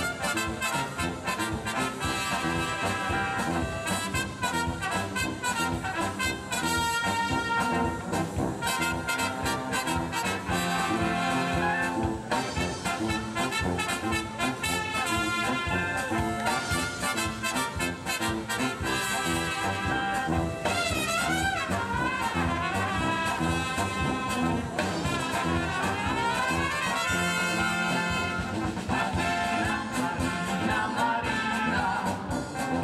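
Slovak brass band playing an instrumental tune, led by trumpets over saxophone, low brass and drums, with quick rising runs in the second half.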